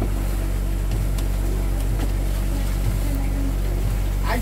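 A fishing boat's engine running steadily, a constant low drone, with a few faint clicks from fish and plastic baskets being handled on deck.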